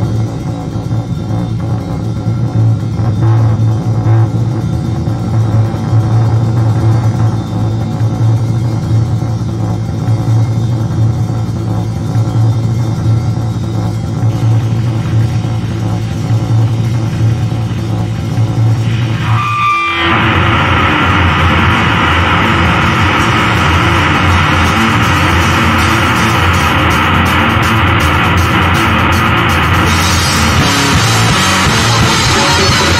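Noise punk played on distorted bass guitar and drums: a low, droning bass note holds for most of the first twenty seconds, then after a brief break the band comes in louder with a dense, noisy wall of sound.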